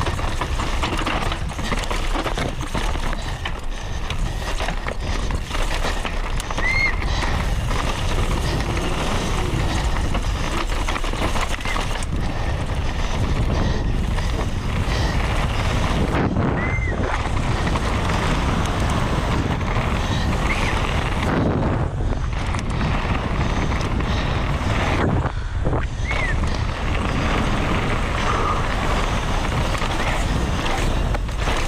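Downhill mountain bike ridden fast over a dirt race track, heard from a camera on the bike: a continuous rush of wind and tyre noise with frequent knocks and rattles from the bike over bumps and roots. A few brief high squeaks stand out now and then.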